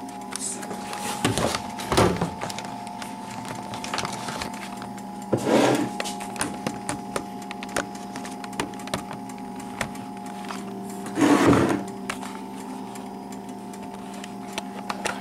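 A steady mechanical hum with scattered light clicks and knocks, and three brief louder rustling bursts about two, five and a half, and eleven seconds in.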